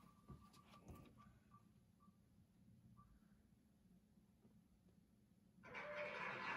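Near silence, with a few faint ticks coming slower and slower as the online name wheel spins down to a stop. A faint steady rushing noise sets in near the end.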